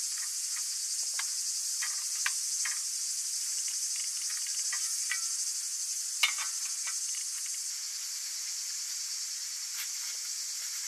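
Steady high-pitched chirring of insects, with scattered sharp clicks and crackles, the loudest a single snap about six seconds in.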